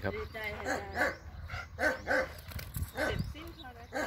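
German Shepherd dog giving several short whining calls that rise and fall in pitch.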